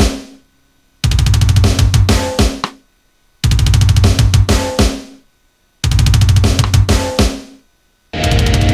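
Drum kit playing three loud bursts of fast bass drum and snare hits, each about two seconds long, fading out and broken off by a short silence before the next.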